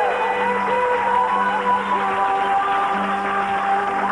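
Live band music with a man singing long, held notes into a microphone.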